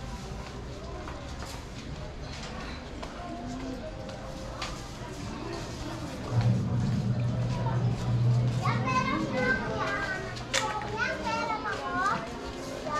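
Children playing and shouting in their high voices, loudest in the second half, over the murmur of other voices. A low steady hum sets in about six seconds in and lasts a couple of seconds.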